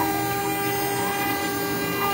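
CNC router spindle running with a steady high whine as a 2 mm ball-nose bit makes a raster finishing pass across a wooden board.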